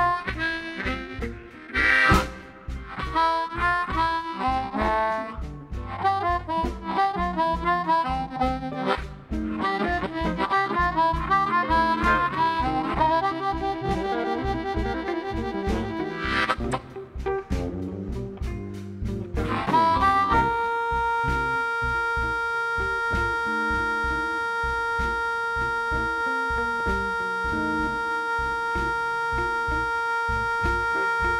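Amplified blues harmonica soloing over a live band with drums and bass, playing short bending phrases over a steady beat. About twenty seconds in it settles into one long held chord that runs on steadily.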